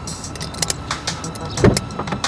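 A car's engine running, heard from inside the cabin as a steady low rumble, with scattered sharp clicks over it and a louder dull thud about one and a half seconds in.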